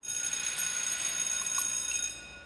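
Electric bell ringing continuously, a steady high metallic ring that dies away near the end.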